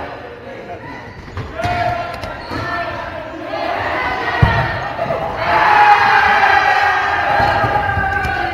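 Players shouting and calling out in a gym hall during a dodgeball game, the voices loudest in the second half, with rubber dodgeballs thudding on the wooden floor and bodies; one sharp ball impact stands out about four and a half seconds in.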